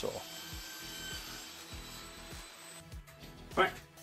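Table saw cutting a plywood panel to size, heard low under background music; the sawing stops about three seconds in.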